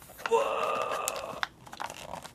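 Cardboard-and-plastic blister card of a Hot Wheels die-cast car being torn open by hand: one raspy tearing sound lasting about a second, with a sharp click near its end.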